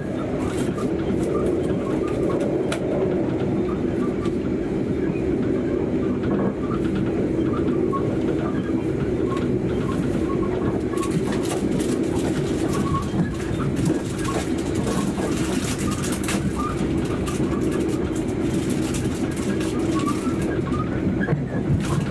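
Steady rumble of a passenger train running at speed, heard inside the carriage, with faint scattered clicks and creaks.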